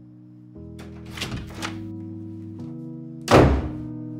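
A louvered wooden door shut with a heavy thud a little over three seconds in, after a few lighter knocks or clatters about a second earlier, over soft background music with sustained chords.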